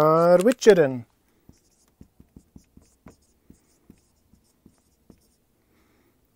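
Dry-erase marker writing on a whiteboard: about a dozen short, quiet strokes and taps at an irregular pace as letters are drawn.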